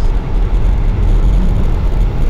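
Steady low rumble of a moving car's engine and tyres, heard from inside the cabin.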